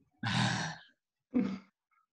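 A man sighing: a breathy exhale with a little voice in it, followed about a second later by a shorter voiced breath.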